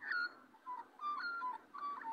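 Young Australian magpie singing a run of clear whistled notes, each held briefly on one pitch, stepping down and back up.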